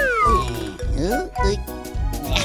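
Cartoon background music with a steady beat, over which a character's cat-like vocal sound slides down in pitch early on; a shorter rising glide follows about a second in.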